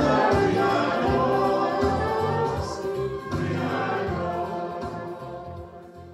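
Church choir singing a hymn with low accompaniment, fading out over the last second or two.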